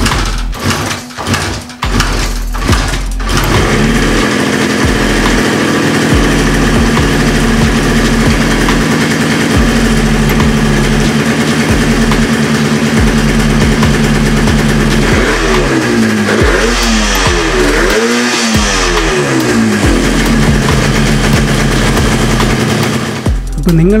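Yamaha RD350's air-cooled two-stroke parallel twin being kick-started, catching about three seconds in and then running steadily on its newly fitted CDI ignition. Between about 15 and 19 seconds it is revved three times, each rise and fall in pitch short.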